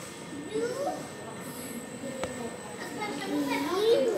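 Voices in a room with a steady background hum; a child's voice rises near the end. One sharp click about two seconds in.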